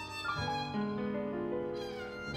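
Instrumental program music led by a violin playing held, bowed notes; lower notes come in underneath about half a second in.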